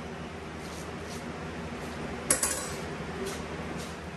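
A single sharp clink of a kitchen utensil or dish being handled about two seconds in, with a few faint small knocks around it, over a quiet kitchen background.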